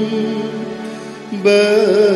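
A Malayalam liturgical hymn of the Mar Thoma Syrian Church sung over steady, held instrumental notes. The line softens, then a louder new sung phrase begins about one and a half seconds in.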